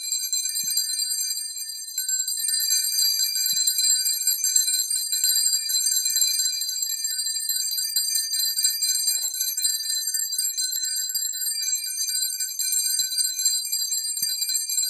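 Altar bells, a cluster of small bells, shaken without pause in a steady high jingle. The ringing marks the blessing with the Blessed Sacrament in the monstrance at benediction.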